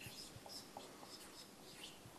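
Dry-erase marker squeaking faintly on a whiteboard in a run of short strokes as letters are written.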